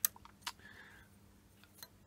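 A few faint, sharp metal ticks, the sharpest right at the start and another about half a second in, as a thin metal rod touches the phosphor bronze lead screw nut in the mill's quill housing.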